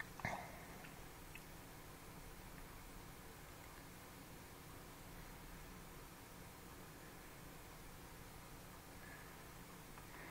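Near silence: a faint steady hiss of room tone, with one brief faint click just after the start.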